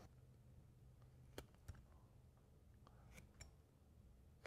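Near silence broken by about four faint clicks of a sharp carving knife cutting into a small block of wood, the clearest about a second and a half in.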